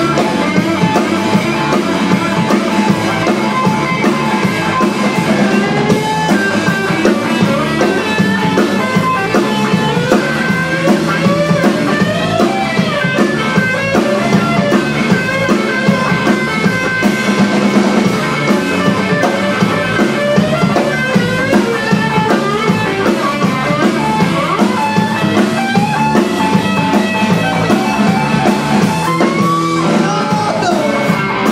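Live rock band playing: an electric guitar lead with notes that bend up and down, over electric bass and a drum kit.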